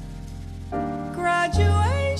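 Live jazz combo playing: upright bass notes, piano chords and drums. In the second half a wordless female vocal slides up in pitch and settles into a held note with vibrato.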